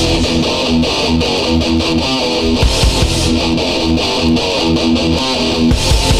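Heavy metal recording in an instrumental stretch: a fast riff on distorted electric guitar, driven by bass and drums.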